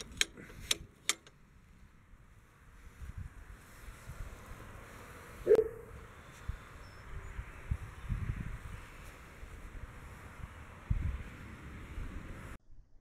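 Wind buffeting the microphone in irregular low rumbling gusts, with a few light clicks in the first second and one sharper sound about five and a half seconds in.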